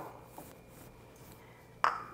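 Quiet room tone with a faint tap about half a second in and one short, sharp sound shortly before the end.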